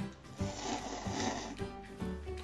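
A person slurping instant noodles, one long noisy slurp lasting about a second, over background music.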